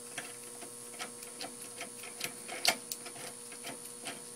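Light, irregular metal clicks and taps as a bolt is turned out of a steel puller block by hand, with one sharper clink a little before three seconds in. A steady hum runs underneath.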